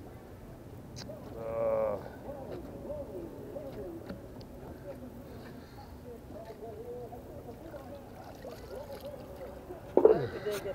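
Faint voices of people talking in the background, with one louder drawn-out voice sound about a second and a half in.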